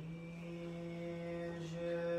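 A single man's voice chanting in Orthodox liturgical style, holding one steady note with a brief break near the end.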